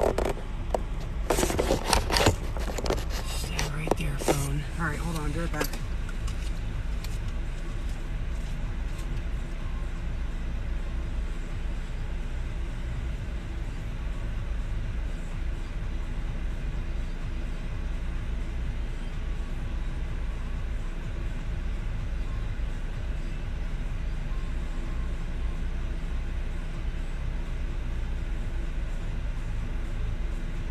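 Steady low hum of a parked car's engine idling, heard from inside the cabin, with an indistinct voice in the first few seconds.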